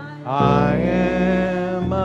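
Live worship band playing a slow song: a long sustained sung note over acoustic guitar, bass and accordion, starting after a brief pause and breaking off near the end.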